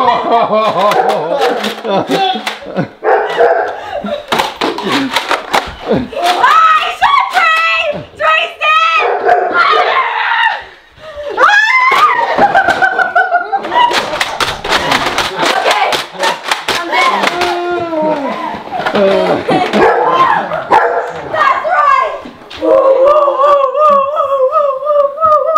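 Excited shouting, shrieking and laughing voices in a toy foam-dart blaster fight, broken by many sharp clicks and snaps of the blasters being fired and worked.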